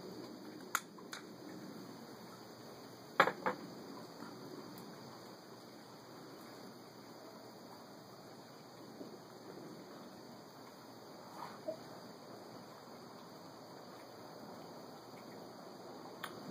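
Quiet background hiss broken by a few short clicks and knocks, the loudest pair about three seconds in: a whiskey glass and bottle being handled and set down on a table.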